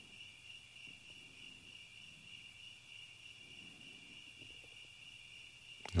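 Faint, steady high-pitched trilling of crickets, one unbroken tone that holds throughout.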